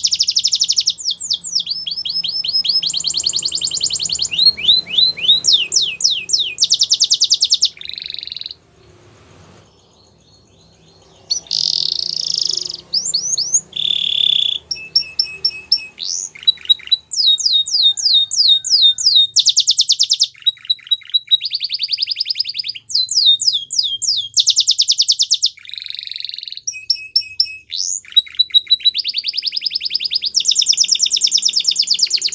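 A domestic canary singing a long song made of fast rolls of short repeated notes, each roll at a different pitch. There is a break of about three seconds roughly a third of the way in.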